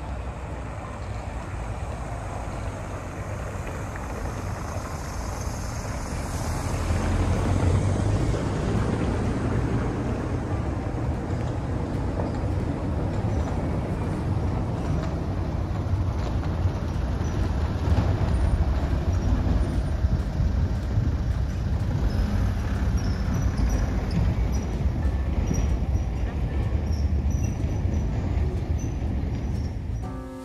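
Street sound with a vehicle on cobblestones: a steady low rumble that grows louder about seven seconds in and stays up.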